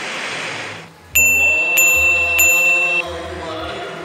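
News-bulletin transition chime: three bright dings about 0.6 s apart, one ringing tone held over them until it stops about three seconds in, above a sustained drone.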